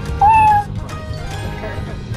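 Background music with a single short, high-pitched meow-like cry, about half a second long, near the start.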